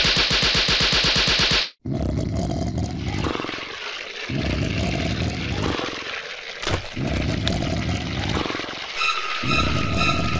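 Cartoon sound effects. A fast, even rattle of about a dozen clicks a second cuts off sharply after under two seconds. Then comes a rough, low rumbling in surges with short breaks, and a steady high beep near the end.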